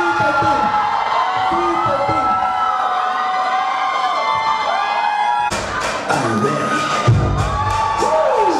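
Audience cheering with many overlapping drawn-out, sliding shouts. About five and a half seconds in, a dance track starts abruptly over the cheering, with a heavy bass beat coming in near the end.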